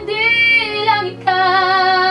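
A young woman singing live into a studio microphone, holding long notes. One sustained note ends with a small slide down, there is a short breath gap about a second in, then a second long, steady note, all over a quiet low accompaniment.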